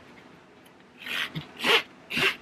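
Black nylon webbing strap being pulled through a metal strap adjuster, sliding with two short rubbing sounds, about a second in and near the end.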